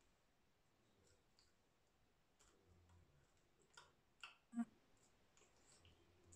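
Near silence: room tone, with a few faint, short clicks a little past the middle, the last one the loudest.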